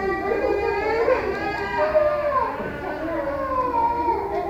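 A young child crying, a high voice in long wavering notes that rise and fall.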